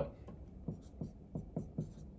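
Dry-erase marker writing on a whiteboard: a handful of short, separate strokes as a number is written.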